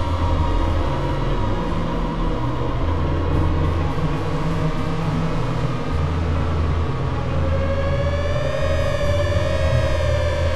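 Experimental synthesizer drone music: a low, stuttering bass drone under a haze of sustained higher tones. A wavering tone comes in about seven seconds in.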